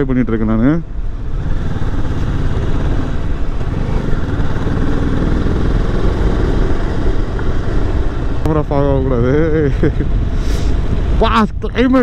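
Motorcycle engine running steadily at riding speed, under a constant rush of wind noise on the rider's microphone.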